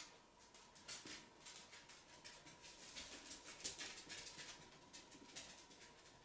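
Near silence broken by faint, irregular small clicks and rustles of hands working with a liquid-liner applicator close to the microphone, thickest in the middle, over a faint steady high hum.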